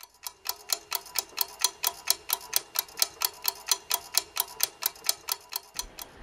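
Quiz-show countdown timer sound effect: a clock ticking rapidly and evenly, about five ticks a second, marking the team's thinking time. It stops shortly before the end.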